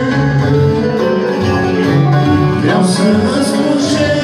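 Live accordion and electronic keyboard playing with two men singing into microphones, amplified through PA loudspeakers.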